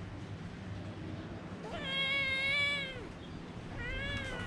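Sphynx cat meowing: one long drawn-out meow a little under two seconds in, and a second meow starting near the end.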